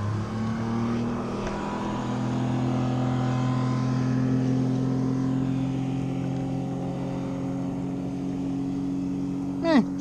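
Motorboat engine running nearby, a steady hum that rises in pitch over the first couple of seconds and then holds.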